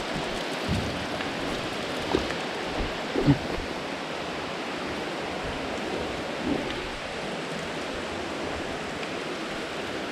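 Water falling from the cave ceiling onto wet rocks, a steady rain-like rush. A few short louder sounds stand out about two and three seconds in.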